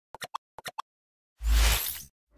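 Logo-intro sound effects: two quick runs of three short pops, then about a second and a half in a loud whoosh with a deep boom underneath.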